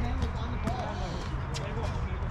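Players' voices talking across an outdoor basketball court, with a few sharp knocks of a basketball bouncing on the hard court surface.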